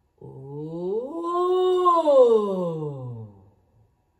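A woman's voice gliding on a sustained "ooh": it slides up from low to high, holds briefly at the top, then slides down to end lower than it began. It is a vocal exploration warm-up tracing an arch-shaped melodic contour.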